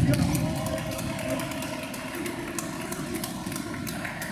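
Indoor futsal game in a hard-floored sports hall: players' voices and shouts ring in the hall, with many short sharp clicks and knocks from feet and ball on the court. The sound is loudest at the very start and then settles a little quieter.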